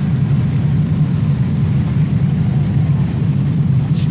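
A steady low drone with no breaks or sudden sounds, a background bed that also runs on under the speech.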